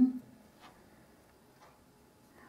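A few faint, short ticks about a second apart in a quiet room.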